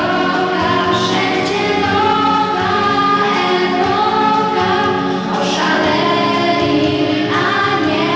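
A girl singing a Polish Christmas carol into a handheld microphone, over a sustained musical accompaniment.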